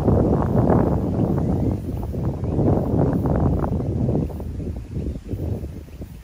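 Wind buffeting the microphone: a loud, low, rumbling rush that eases off over the last couple of seconds.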